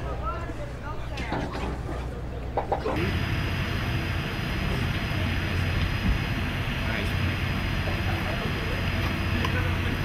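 Indistinct voices talking for the first three seconds, then, after an abrupt change, a steady background din with a low hum.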